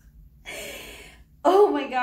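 A woman's sharp, breathy gasp, then a loud drawn-out vocal exclamation, rising then falling in pitch, of dismay at having cut her hair too short.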